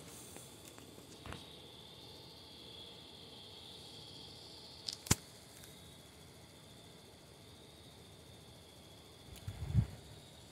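Mostly quiet background with a faint steady high-pitched tone, broken by sharp clicks of a handheld phone being handled: one at the start, a smaller one just after, and one about halfway through. A short rustle comes near the end.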